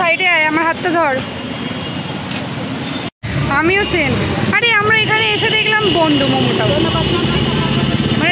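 A woman talking over busy street and traffic noise; the sound cuts out completely for a moment about three seconds in.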